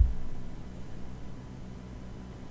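Background of the recording: a steady low hum with faint hiss, opened by a brief soft low thump.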